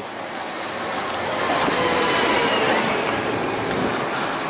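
A single-decker bus drives past close by. Its engine and tyre noise swell toward the middle and then ease off, with a faint thin whine over it.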